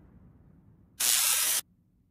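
The fading tail of a low rumble, then about a second in a sharp half-second burst of hiss, like a spray, that starts and stops abruptly.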